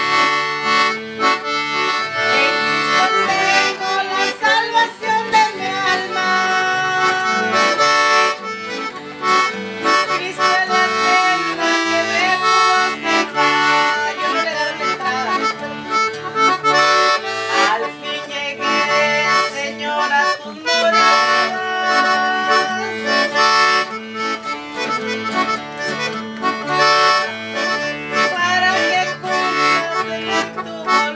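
Piano accordion and strummed acoustic guitar playing together, an instrumental passage with no singing heard, over a steadily repeating pattern of low bass notes.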